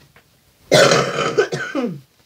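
A woman's loud, breathy non-word vocal sound lasting just over a second, starting about two-thirds of a second in and falling in pitch at the end.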